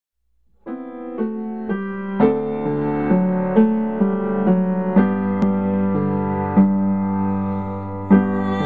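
Solo piano playing a slow hymn introduction, beginning about half a second in with single struck notes and filling out into fuller chords from about two seconds in.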